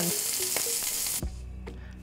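Shrimp sizzling in hot olive oil in a cast iron pan, a dense hiss that cuts off suddenly a little over halfway through, leaving a faint low hum.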